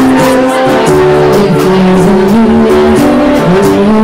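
Live band playing loud amplified music: held notes that step and slide in pitch over drums, with a cymbal struck about two to three times a second.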